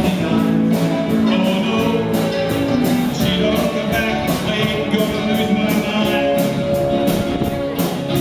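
Live band playing a rock number, guitar and drums keeping a steady beat, with singing.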